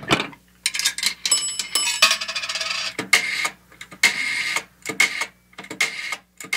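Outro sound effect: a busy run of clicks and clatters with bell-like rings, over a steady low hum.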